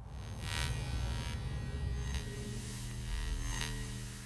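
Cinematic logo-sting sound design: a low droning hum that swells and holds, with a few sustained tones above it, two brief whooshes (one about half a second in, one near the end) and a thin high whine over the second half.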